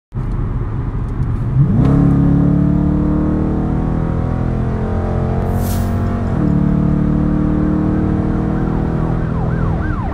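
Dodge car's engine heard from inside the cabin under hard acceleration at highway speed: the revs jump up about two seconds in, pull steadily, drop at an upshift a little past halfway, then pull again. A brief hiss comes just before the upshift, and near the end a siren starts a fast up-and-down yelp.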